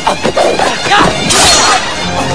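Film soundtrack music with a bagpipe-like wind-instrument sound, mixed with sound-effect hits and a sharp whoosh about a second and a half in.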